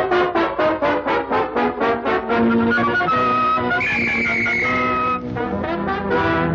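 Orchestral cartoon score led by brass: quick, short repeated notes at about five a second, then a long held high note that sags slightly in pitch around the fourth second, before quick notes start again near the end.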